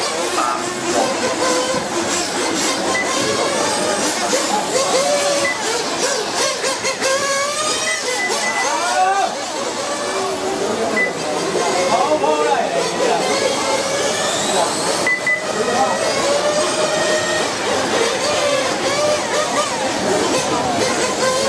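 Several radio-controlled racing motorcycles' motors whining together, their pitches overlapping and sweeping up and down as the bikes accelerate and brake around the track, with one sharp rising whine partway through.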